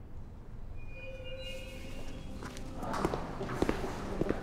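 Leather-soled dress shoes walking on a hard tiled floor, the steps starting about three seconds in, over soft sustained music tones that come in about a second in.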